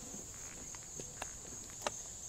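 Steady high insect chirring, likely crickets, with a few faint clicks and rustles from hands pushing a pillow-wrapped battery pack into a plastic box.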